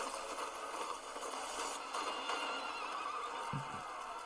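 Anime trailer soundtrack: a steady rushing noise bed with faint, wavering high tones over it. A brief low voice sound comes near the end.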